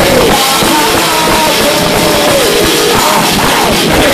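A groove metal band playing live and loud: distorted guitars and drums with a singer's voice over them, heard from the audience through the venue's PA.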